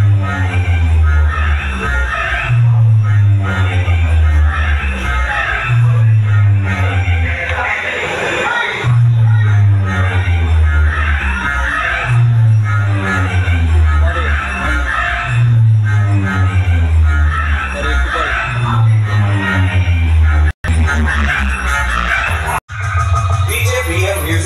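Loud electronic dance music played through a large DJ sound-system speaker stack, with heavy bass notes repeating every couple of seconds. The sound cuts out for an instant twice near the end.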